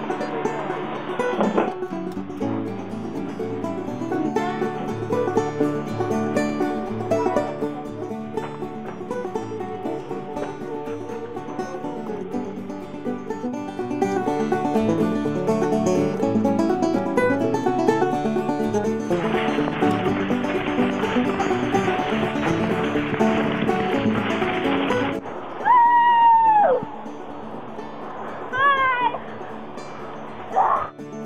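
Banjo-led bluegrass music playing throughout. About three-quarters of the way in, a loud high cry falls steeply in pitch over quieter music, and a few short high chirping calls follow near the end.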